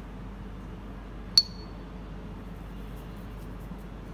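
A metal spoon clinks once, a sharp tap with a brief ringing tone, over a faint steady room hum.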